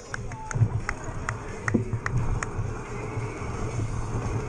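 Mountain bike rolling over a dirt and gravel course, with steady tyre and wind rumble on the bike-mounted microphone. Spectators' voices sound alongside, and a run of sharp ticks comes in the first half.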